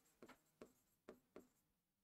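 Faint, short scratches of a pen writing on an interactive display board, about four strokes.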